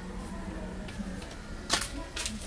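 Quiet room noise with a low steady hum, a few faint ticks, and one sharper knock about three-quarters of the way through.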